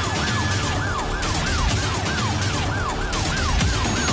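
Siren sound effect, its pitch rising and falling in quick arches about three times a second, over intro music with a heavy beat.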